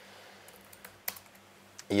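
A few light clicks of laptop keys being pressed, then a man starts speaking near the end.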